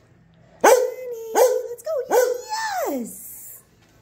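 A dog barking about three times in quick succession, each bark held on one pitch, then a last bark that slides down in pitch like a whine.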